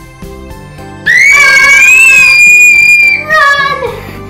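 A child's high-pitched scream starts suddenly about a second in, rises slightly, holds for about two seconds and then falls away, loud over steady background music.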